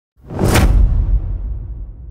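Whoosh sound effect with a deep boom: it swells suddenly, peaks about half a second in, and leaves a low tail that fades slowly.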